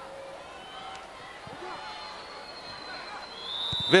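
Low stadium crowd noise, then a referee's whistle starting a long blast near the end: the final whistle of the match.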